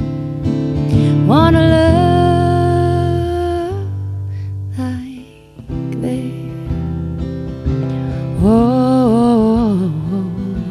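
Live solo performance: a woman singing over her own strummed acoustic guitar. A long held sung note comes about a second in, the guitar dips briefly around the middle, and another wavering sung phrase comes near the end.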